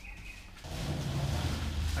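Clear plastic bag wrapped around a racing bucket seat rustling and crinkling as the seat is lifted and carried, starting about half a second in.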